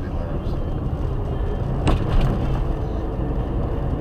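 Steady low road and engine rumble inside a moving car, with a single sharp click about two seconds in.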